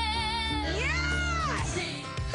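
Female vocalists singing a pop duet over a band backing. A held note with vibrato, then a high sung note that slides up and back down, fading out just before the end.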